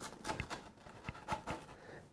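Kitchen knife slicing through a crisp, pan-toasted sandwich: a scattering of faint, irregular crunches and crackles from the toasted bread crust.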